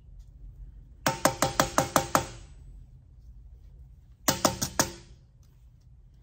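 Rawhide mallet tapping the edge of a copper sheet over a tinner's stake to fold it over. A quick run of about eight light strikes comes about a second in, then a shorter run of four or five strikes past the middle, each with a brief metallic ring.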